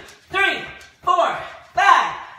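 A woman's voice counting repetitions aloud in a steady rhythm, a count about every three-quarters of a second, three counts in these two seconds.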